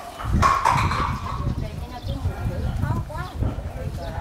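Background voices of people talking outdoors, over irregular low thumps and rumble.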